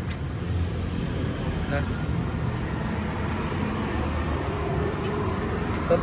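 Steady low rumble of vehicle or traffic noise.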